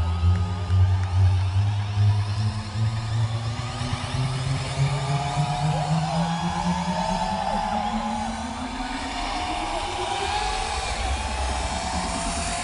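Electronic dance music from a DJ set, played loud over a large outdoor festival sound system and heard from within the crowd. A heavy bass line gives way to a long rising sweep that climbs steadily in pitch, the build-up toward a drop.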